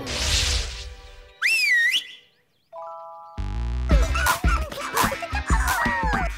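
Cartoon sound effects and music: a swish that fades out, then a wavering whistle-like glide. After a short silence comes a held electronic chord, then bouncy music with sliding whistle notes.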